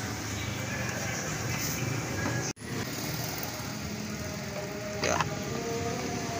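Steady mechanical background hum, broken by a sudden cut to silence about two and a half seconds in.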